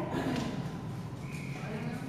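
Ice hockey game ambience in an indoor rink: irregular clacks and knocks of sticks, puck and skates on the ice, over the hum of the arena, with voices mixed in.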